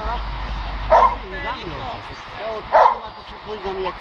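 A dog barking twice, about a second in and again near three seconds, with high whining between, as it lunges on its leash at a helper during protection bite-work training.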